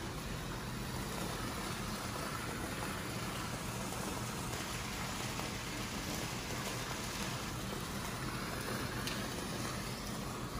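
A garden wall fountain, water falling from a stone wall into a small pool, splashing in a steady hiss, a little louder in the middle.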